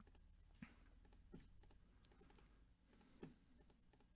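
Near silence with a few faint, spaced clicks of a computer mouse and keyboard.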